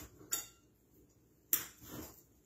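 A kitchen knife cutting through soft dragon fruit flesh and knocking against the plate beneath, two sharp clicks about a second apart, the second louder.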